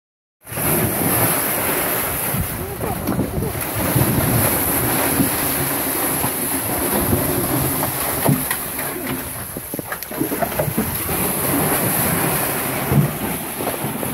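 Cattle plunging and swimming through a cattle dipping vat: the dip liquid splashes and sloshes steadily. People's voices call in the background.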